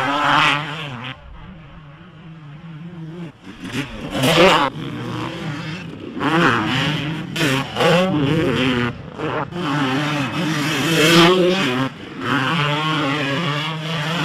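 Motocross dirt bike engines revving in repeated rising and falling surges, quieter for a couple of seconds near the start and then louder again.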